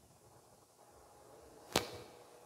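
Quiet room tone, then a single sharp click near the end that dies away quickly.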